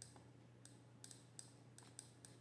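Near silence with about eight faint, sharp clicks at irregular intervals: a stylus tapping on a pen tablet while handwriting.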